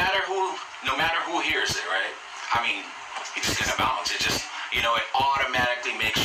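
Men talking: only speech, no other sound stands out.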